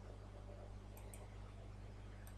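Faint steady low hum with two quick, faint clicks about a second in.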